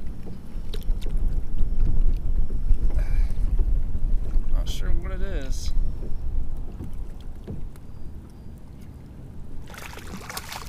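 Strong wind buffeting the microphone in low rumbling gusts, heaviest through the first half and easing near the end, over choppy water slapping a kayak hull.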